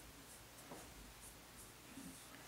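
Near silence, with faint soft brushing from a paintbrush dabbing dye onto stretched silk.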